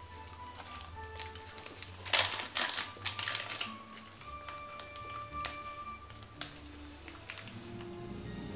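Soft background music with held notes, and a cluster of crisp crunching clicks about two seconds in, with a few more later: chewing a crunchy chocolate hemp bar.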